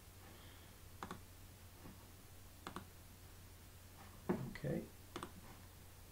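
Computer mouse clicks: three quick double clicks, about a second in, near three seconds, and near the end, over a steady low hum.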